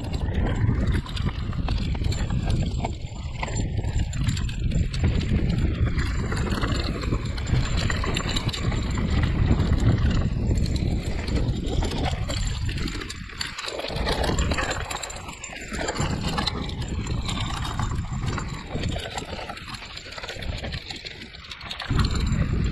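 Hardtail e-mountain bike rattling and knocking over a rough dirt trail on a descent, with tyre noise and the clatter of the bike over bumps. The sound dips briefly a few times, around 13, 16 and 20 seconds in.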